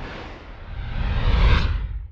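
Whoosh sound effect over a deep rumble, swelling for about a second and a half and then fading out.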